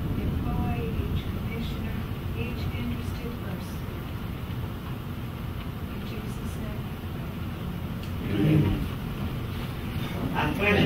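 A faint voice speaking a prayer off-microphone over a steady low rumble of room noise, with a louder spoken moment about eight and a half seconds in.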